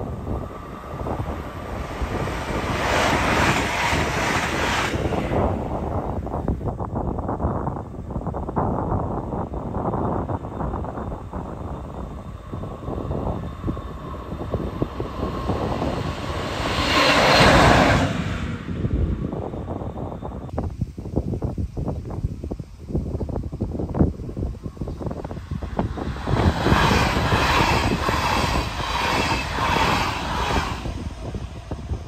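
Electric trains passing on an electrified main line: a continuous rail rumble with wheel-on-rail noise. It is loudest about 17 seconds in, as a pair of coupled electric locomotives goes by close, and near the end a red double-deck regional train passes.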